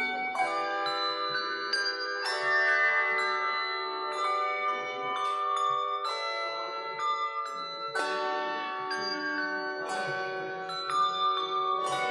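Handbell choir ringing a piece of music: chords of several bells struck together every second or two and left to ring on, overlapping as they decay.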